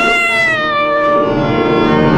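Clarinet playing Hindustani classical music: one long held note that bends slightly up and then slides slowly downward, over a steady drone.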